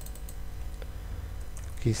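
Typing on a computer keyboard: a run of light key clicks.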